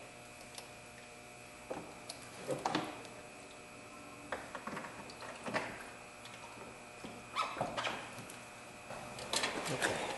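Scattered light knocks and clicks of a plastic radiator fan shroud being handled and fitted back into place, over a faint steady hum.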